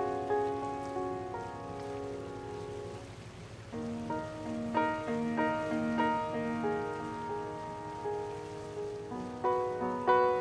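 Ninety-year-old upright piano played as part of a slow, mellow piece: a held chord fades away over the first few seconds, then a new phrase of repeated notes begins about four seconds in over a low note struck roughly every half second.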